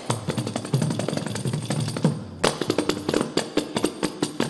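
Kanjiras, small South Indian frame drums with a single jingle, played with the fingers in a fast rhythmic passage of dense strokes. The playing grows denser and brighter from about halfway through.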